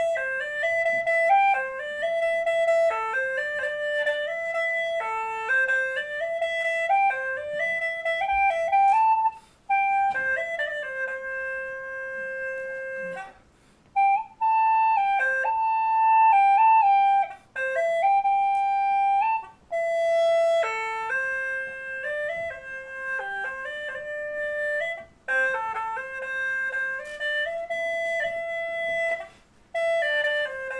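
A small handheld wind instrument playing a slow solo melody, unaccompanied, one clear line in phrases of a few seconds separated by brief breath pauses.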